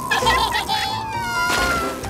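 Cartoon sound effects over background music: a few quick bubbly blips, then a high tone that slides downward.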